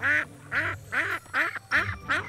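A duck quacking about five times in quick succession, short loud quacks a little under half a second apart.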